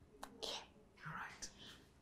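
Whispered speech: a woman softly saying "okay" in a breathy whisper, with a little more whispering after it.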